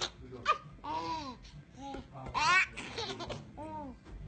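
A baby laughing in several separate bursts, the loudest about two and a half seconds in.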